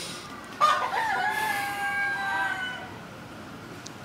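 A rooster crowing once: a single long call of about two seconds, starting about half a second in with a brief dip in pitch, then held level before fading.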